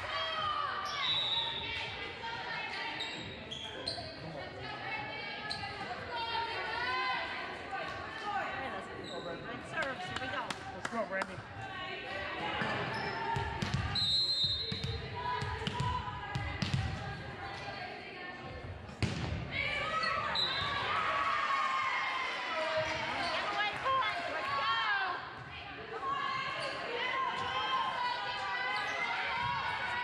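Many voices chattering, echoing in a large gymnasium, with a volleyball thudding on the hardwood floor several times in the middle.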